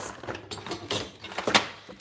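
Handling noise: rustling and several light knocks and clicks as objects are pulled loose from a tangle of other items.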